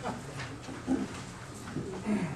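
A few short, scattered voice sounds from people in a meeting room, brief chuckles and murmurs, with pauses between them over a low room hum.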